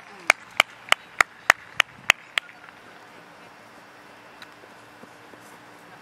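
A person clapping hands in a quick, even rhythm, about nine sharp claps at about three a second, stopping about two and a half seconds in.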